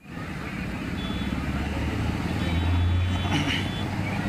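Street ambience with a motor vehicle's engine running close by, its low hum building to a peak about three seconds in.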